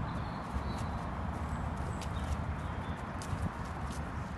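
A heavy horse walking on a lead over soft dirt and grass: irregular dull hoofbeats with a few sharp ticks, over a steady low rumble.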